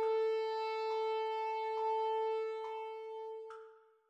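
Alto saxophone holding one long note of the melody's introduction, which fades out near the end in a diminuendo. A short click marks each beat, a little under one a second.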